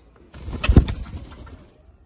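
Nagasaki bantam hen flapping her wings as she breaks free of the hands holding her: a rush of wingbeats lasting over a second, loudest just under a second in.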